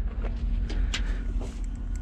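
Wind buffeting the camera microphone, a flickering low rumble, with a few faint clicks.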